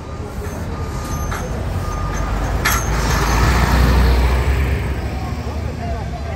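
Coach bus engine rumbling close by, swelling louder toward the middle and then easing off, with a brief hiss of air a little before the middle.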